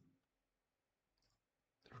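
Near silence: room tone, with one faint computer-mouse click a little over a second in. A man starts speaking right at the end.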